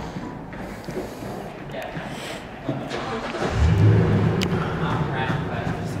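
A motor vehicle's engine starts about halfway through and then runs steadily with a low hum.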